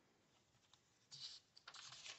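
Faint papery rustle of a picture book's page being turned by hand, starting about a second in.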